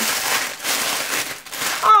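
Packaging rustling and crinkling as it is handled and opened, an uneven hiss with no steady pitch; a short spoken 'Oh' comes near the end.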